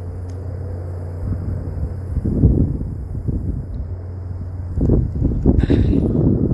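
Wind buffeting a phone's microphone in irregular low gusts, with rustling as the phone is moved, over a steady low hum.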